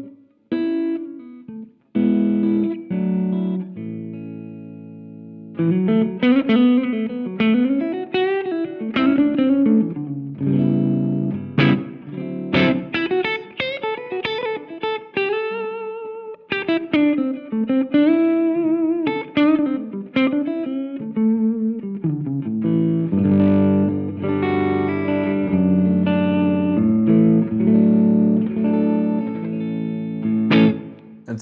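Electric guitar played through a Greer Royal Velvet class-A British-style preamp/overdrive pedal. A few chords, one left to ring out, lead into a single-note lead line with string bends, and the passage ends on fuller strummed chords.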